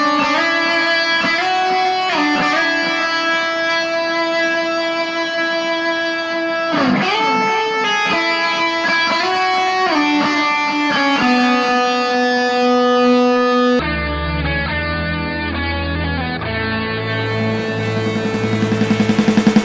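Background music led by a guitar melody of long held notes. About 14 seconds in the sound turns duller and low bass notes join, and near the end a pulsing build-up begins.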